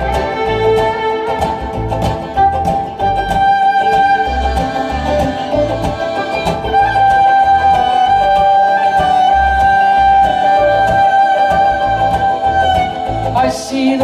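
Live band playing an instrumental passage led by a fiddle holding long bowed notes, over banjo and guitar strumming and a steady low drum beat.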